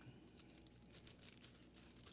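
Near silence, with faint rustling of Bible pages being turned.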